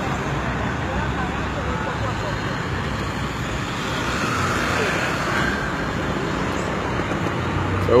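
Steady street traffic noise, with vehicle engines running and faint, indistinct voices in the background.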